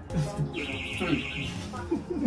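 Elevator alarm sounding, a high, rapidly pulsing tone that starts about half a second in, from an elevator car that has gone out of service.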